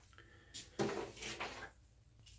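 Faint handling noises: multimeter test leads and probes being picked up and moved on the bench, a brief rustle and light clatter. The main stretch runs from just under a second in to about a second and a half.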